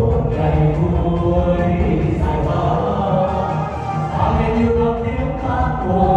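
Mixed choir of men and women singing a Vietnamese revolutionary song, with soloists on microphones over an instrumental accompaniment through the hall's sound system.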